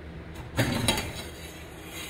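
Metal latch rod on a storage unit door clinking and rattling as it is handled, with a cluster of sharp clinks about half a second in.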